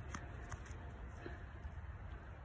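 Faint handling noise: soft rustling and a couple of small clicks as fingers turn a dirt-caked plastic object, over a low steady outdoor background.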